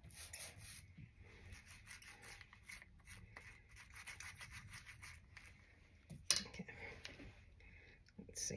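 Faint rubbing of a small ink brayer rolled back and forth over the cut face of a green bell pepper, with a short louder knock about six seconds in.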